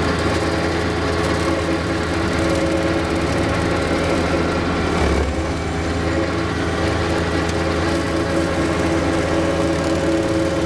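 John Deere 1025R subcompact tractor's three-cylinder diesel engine running steadily under load, driving a Dirt Dog RC104 rotary cutter (brush hog) through tall grass, with a brief change in tone about five seconds in.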